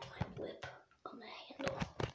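A girl whispering quietly, broken up by a few faint clicks.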